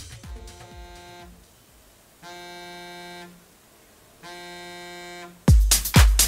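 An iPhone buzzing for an incoming call: three steady buzzes at one pitch, each about a second long and about two seconds apart, while techno music fades out. Loud electronic dance music with a heavy kick drum cuts in just before the end.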